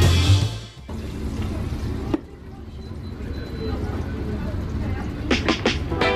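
Intro music cuts off about a second in, giving way to the steady background noise of a restaurant kitchen with indistinct voices. A few sharp clicks come near the end.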